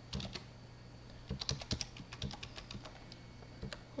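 Computer keyboard keys clicking in short, irregular runs, the busiest stretch about a second and a half in, over a faint steady low hum.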